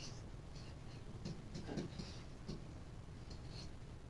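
Faint taps and scratches of a stylus writing on a tablet: a series of short strokes as lines and letters are drawn.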